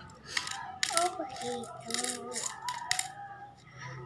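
Metal coins clinking: a series of sharp clinks as coins are handled and dropped into a plastic coin bank.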